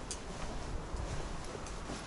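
Footsteps on the stone path of a cave passage, heard as a few faint, irregular clicks and scuffs over a low, steady rumble.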